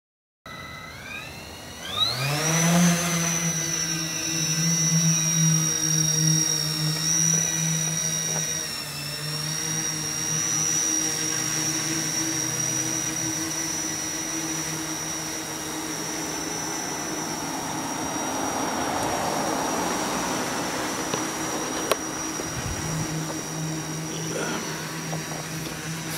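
Heavy-lift hexacopter's six 400kv brushless motors with 14-inch props spooling up with a sharply rising whine about two seconds in as it lifts off, then holding a steady buzzing hum with a high thin motor whine while it climbs and hovers.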